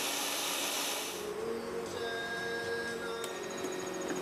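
Food processor running, blending pesto: a steady high-pitched whir that drops away after about a second, leaving a few faint steady tones.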